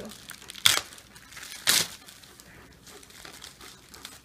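Glossy magazines and their paper being handled and shuffled: two sharp, loud paper rustles about a second apart, then faint crinkling.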